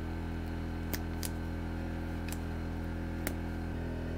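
Self-adjusting wire strippers clicking a few times, sharp and spaced about a second apart, as a wire is stripped, over a steady low hum.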